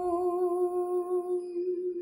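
A woman humming one long, steady note with closed lips, unaccompanied, at the close of a line of a Hindi lullaby. The note wavers slightly and thins toward the end.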